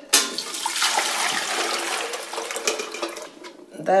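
Red cabbage dye liquid poured from a stainless steel bowl through a strainer into another steel bowl, a steady splashing pour that dies away about three seconds in. A sharp metal knock at the very start.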